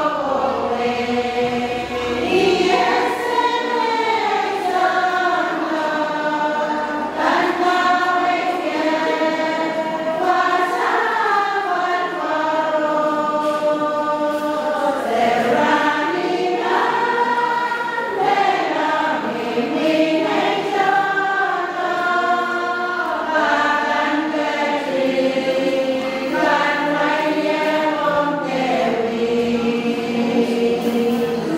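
A group of women singing a hymn together in slow, held notes.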